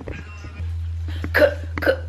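Background music with a steady low bass line, and two short vocal sounds, hiccup-like, in the second half.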